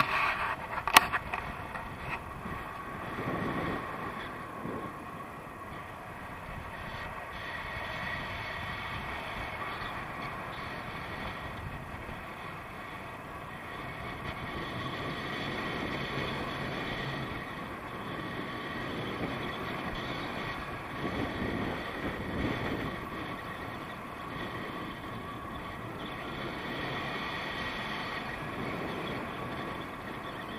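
Steady rush of airflow on a selfie-stick camera's microphone during a tandem paraglider flight, with a sharp click about a second in.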